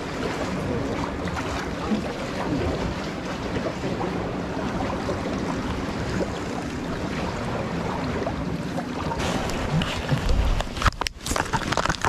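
Sea water washing and lapping around concrete tetrapods, with wind on the microphone, as a steady noise. In the last couple of seconds it grows uneven, with a low bump and a few short knocks of handling.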